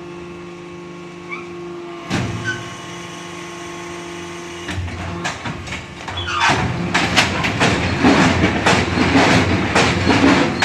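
HBY6-10 interlocking clay-soil brick machine running with a steady motor hum. About halfway through, a rapid run of knocks and clattering starts and grows louder as the machine cycles and pushes out a batch of pressed bricks.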